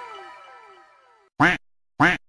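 Comic sound effects laid over the scene: a series of falling, whistle-like pitch glides that fade away, then two short, loud duck-quack sounds about a second and a half in and at the very end.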